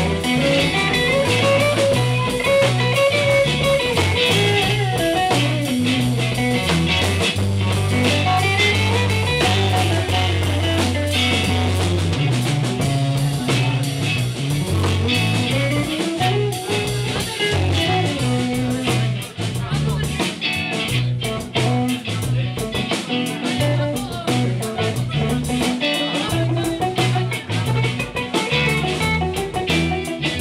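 Live blues band playing an instrumental passage: electric guitars over bass guitar and a drum kit, with a melodic guitar line bending up and down above a steady bass.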